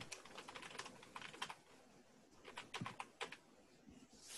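Faint computer keyboard typing in two quick runs of keystrokes, one over the first second and a half and another about two and a half seconds in.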